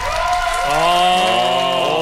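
A man's long, drawn-out "aah" of admiration, held steady for well over a second, with audience clapping under it.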